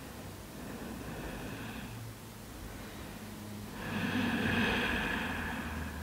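A woman's slow, deep breathing during a held yoga pose: a soft breath about a second in, then a longer, louder breath from about four seconds in.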